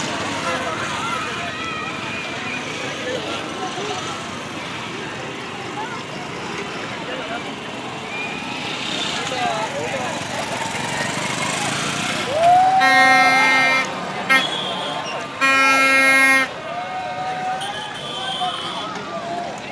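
Crowd voices and shouting in the street. Near the end, a loud horn is blown twice, each blast held steady for about a second, with a short toot between them.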